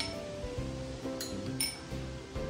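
A metal spoon clinking against a glass bowl three times as food is stirred in it, the last clink the loudest, over background music.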